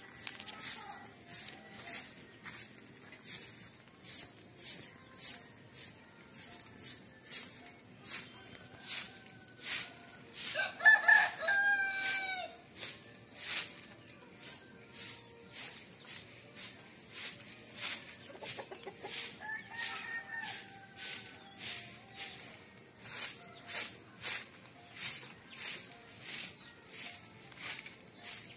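A rooster crowing once about ten seconds in, the loudest sound here, with a fainter second call near twenty seconds. Behind it an insect chirps high-pitched, about two chirps a second.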